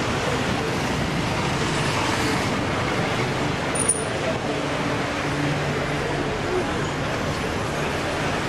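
Steady street traffic noise with indistinct chatter from a waiting crowd, and a brief click about four seconds in.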